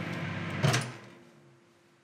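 Microwave oven humming, then a single sharp clunk about two-thirds of a second in as the door is opened, after which the hum dies away: the heating has been stopped.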